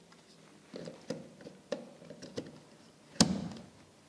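Plastic front unit of a PT712 wall thermostat being pressed onto its mounting frame: a few light clicks and knocks, then one sharp snap a little after three seconds in as it clicks into place.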